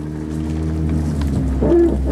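A vehicle engine idling: a steady, even low hum.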